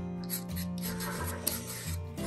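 Background music with sustained notes and a pulsing bass, over the short scratching strokes of a white chalk stick rubbing across black paper as letters are written.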